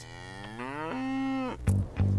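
A cow mooing once: one long call that rises in pitch and then holds steady for about a second and a half. Near the end, music with a heavy bass line starts.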